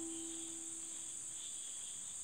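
The last note of background music fades out, leaving a faint, steady, high-pitched hiss.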